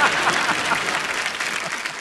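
Studio audience applauding, a dense spread of hand claps that eases off slightly near the end.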